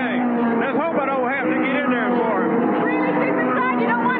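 A man talking over the steady drone of stock car engines running on the track.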